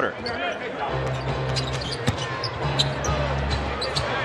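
A basketball dribbled on a hardwood arena court: a few sharp bounces over a steady background of arena noise.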